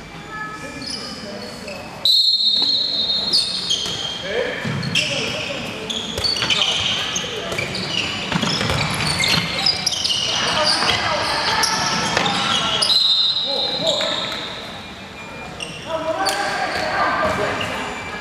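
Indoor handball play: the ball bouncing on the court, sneakers squeaking and players calling out. It all echoes around a large sports hall, with sharp high squeals about two seconds in and again near the end.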